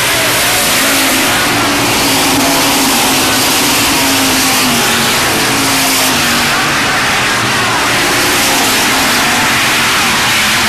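Hobby stock race cars at speed on a dirt oval, several engines running hard and revving as the pack goes by, a loud continuous engine din whose pitch wavers up and down.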